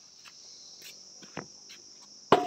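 Insects chirring steadily at a high pitch, with faint scattered rustles and one soft knock about one and a half seconds in.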